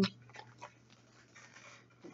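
Faint rustle of plastic wrap being peeled off a Zuru 5 Surprise Mini Brands capsule ball, with a couple of small ticks from handling in the first second.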